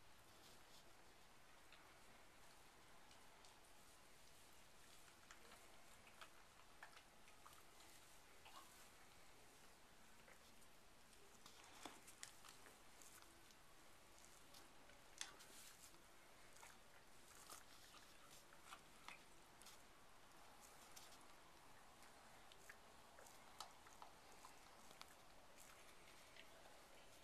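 Near silence with faint, scattered rustles and small clicks from straw bedding stirred by a newborn foal and its dam.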